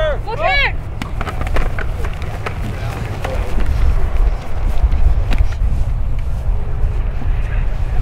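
Youth football players running a play on grass: a short shout at the snap, then scattered clicks and knocks of pads, helmets and cleats as they run, over a loud low rumble.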